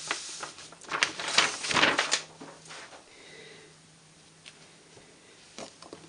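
A palm rubbing over a sheet of cardstock laid on an inked rubber background stamp: a dry, scratchy swishing for about two seconds, then it fades to a few soft paper sounds near the end.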